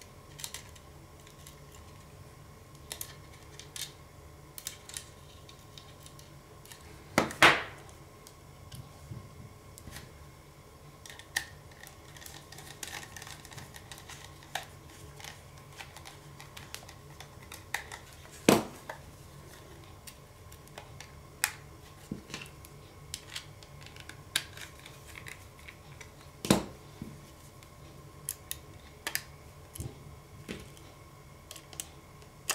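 Small screws being turned with a screwdriver in the side of a metal laptop hard-drive caddy while an SSD is fitted into it: scattered light metal clicks and scrapes, with three louder knocks about seven, eighteen and twenty-six seconds in.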